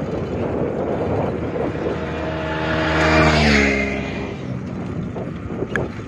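A motor vehicle driving past on the road, its engine note growing louder, peaking about three seconds in, then dropping in pitch as it moves away.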